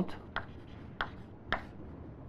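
Chalk writing on a blackboard: a few sharp taps and faint scratching as a short heading is chalked up.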